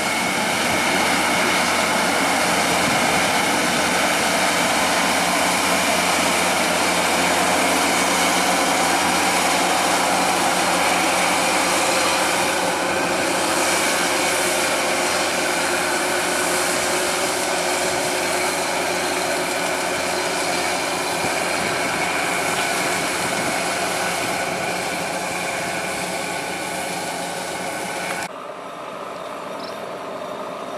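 Kubota DC-108X combine harvester, its Kubota 3800 diesel engine and harvesting machinery running steadily under load as it cuts and threshes rice. The sound fades slowly, then drops suddenly to a quieter, more distant version near the end.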